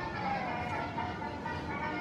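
Amusement-park background: faint music and distant voices over a steady outdoor hum, with no sound standing out.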